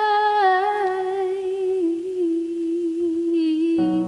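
Song's vocal holding a long wordless note that steps down in pitch twice and settles on a low held tone. Near the end a sustained instrumental chord comes in under it.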